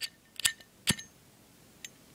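Metal flip-top lighter, a Zippo Slim: three sharp metallic clicks about half a second apart as the lid is flicked open and the flint wheel is struck, lighting it, then a faint click near the end.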